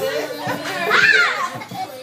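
Children shouting and squealing as they play rough, with one high squeal rising and falling about a second in.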